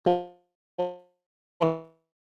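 Three short ringing tones at the same voice-like pitch, about 0.8 s apart, each starting sharply and fading quickly: the speaker's voice broken into tone-like fragments by a faltering video-call connection.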